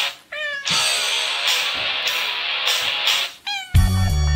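A cat meows twice, once near the start and again near the end, over hissy music with a regular beat. Louder music with a heavy bass comes in just before the end.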